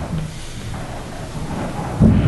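Low rumbling room noise in a meeting hall, with a faint murmur near the start.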